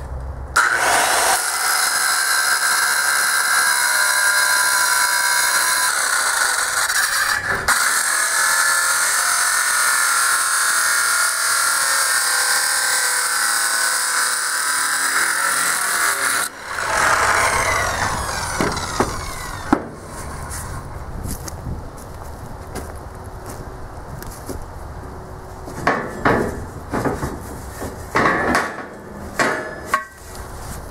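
Craftsman circular saw with a metal-cutting blade cutting through rectangular steel tubing: a loud, steady, high grinding whine with a brief dip partway through. The cut then ends and the saw cuts off, its blade spinning down with a falling whine. A few sharp knocks follow near the end.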